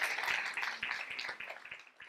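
Audience applauding, a dense patter of many hands clapping that thins out and fades near the end.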